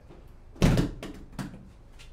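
Lid of an Igloo cooler shut with one loud thud a little over half a second in, followed by a couple of light knocks.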